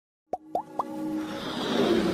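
Animated logo intro sound effects: three quick plops, each rising in pitch, within the first second, followed by a swelling riser that grows steadily louder.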